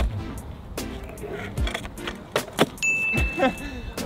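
Kick scooter on asphalt: a sharp clack as the deck pops off the ground, then a few knocks of the deck and wheels landing and rolling during a bar whip flat attempt. A high steady tone sounds in the last second.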